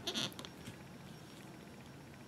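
Quiet room tone, with one brief soft hiss just after the start.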